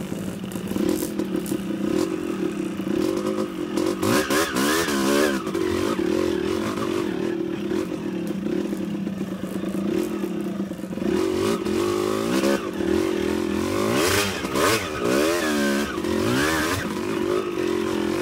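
Dirt bike engines revving up and down over and over while a bike climbs a rough rocky trail, with knocks and clatter from the wheels on the rock.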